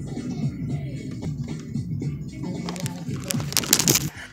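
Rap music playing through the car's newly wired speakers, with a cluster of sharp clicks and scrapes near the end.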